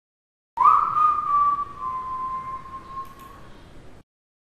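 A single whistled note: it slides up quickly, holds a little lower and fades away over about three seconds.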